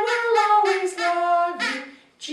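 Women singing a simple children's song unaccompanied, in held sung notes that fade out near the end.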